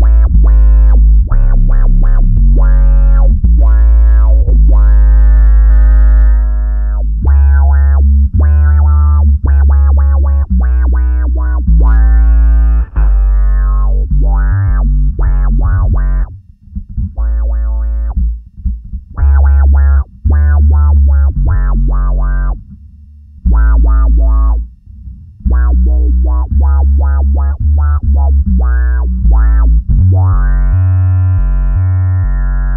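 Electric bass played in short, funky staccato phrases through the Zoom B6 multi-effects processor's pedal resonance filter, with a heavy low end. The playing breaks off briefly twice, a little past the midpoint and again later.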